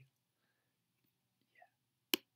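Near silence: room tone, with one faint, brief sound about a second and a half in.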